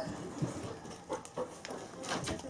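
A Bernese Mountain Dog's paws and claws tapping and scuffing on the floor as he turns in circles, with a few soft clicks.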